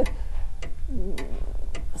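A clock ticking evenly, a little under two ticks a second.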